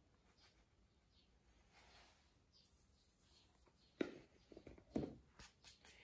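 Near silence: room tone, with a few faint knocks in the last two seconds.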